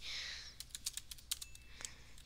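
Faint computer keyboard typing: a quick run of separate key clicks as a short command is typed.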